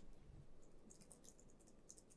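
Near silence with a scattering of faint, quick clicks about a second in and again near the end: a laptop's keys and trackpad being worked.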